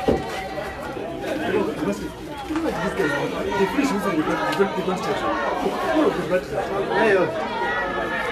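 Several people talking at once in overlapping chatter, with a brief knock right at the start.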